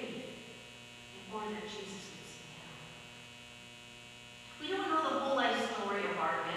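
Steady electrical mains hum under a person's voice, which speaks briefly early on and then louder again near the end.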